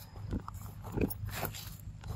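A few short grunts from a young macaque.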